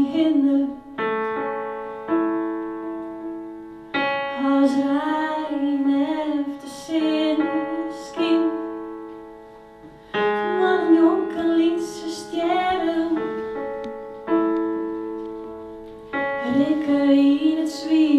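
A woman singing live to her own keyboard, which plays piano chords. Each chord is held for a second or two and left to fade, and her sung phrases come in over them in stretches of a few seconds.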